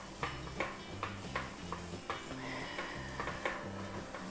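A silicone spatula stirring and scraping grated apples around a frying pan on a portable gas stove, a soft scrape about three times a second.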